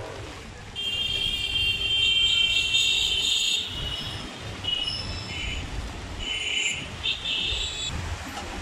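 Vehicle horns blaring over a low traffic rumble: one long high-pitched honk lasting about three seconds, then several short honks near the end.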